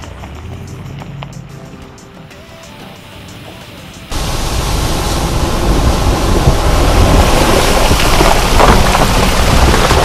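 Mitsubishi Pajero's diesel engine running at low speed as the SUV rolls by; about four seconds in the sound switches abruptly to a loud, steady rush and splash of muddy water as the Pajero ploughs through a deep puddle.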